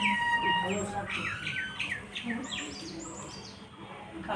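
Birds chirping and calling: a string of short whistled calls that rise and fall, with a burst of higher chirps about halfway through. Faint voices sit underneath.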